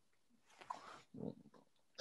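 Near silence on a video-call line, with a few faint, brief soft sounds from about half a second in to about a second and a half in.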